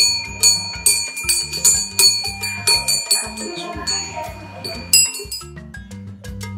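Metal bells hung in a wooden stand ringing as a toddler strikes them, their clear tones sounding until about five seconds in, over background music with a steady beat.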